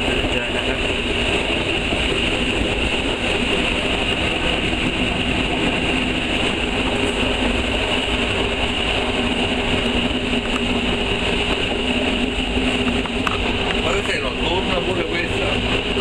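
Inside the cab of an FS ALn 663 diesel railcar: the diesel engine running with a steady drone, several steady hum tones and a steady high hiss.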